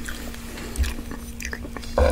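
Close-miked chewing of ramen fried rice: small wet mouth clicks and smacks, over a faint steady hum. At the very end a metal spoon starts scraping through the rice in the pan.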